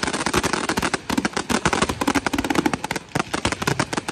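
Fireworks display firing a dense barrage: shells launching and bursting in rapid, overlapping bangs and crackles, many per second, easing off briefly about three seconds in.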